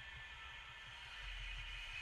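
Faint steady hiss and low hum with no distinct event: quiet background noise.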